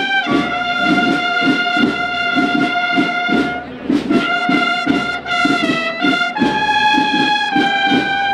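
Brass marching band playing a processional march in unison: long, bright held notes that step to a new pitch every few seconds over a steady beat, with a short break about three and a half seconds in.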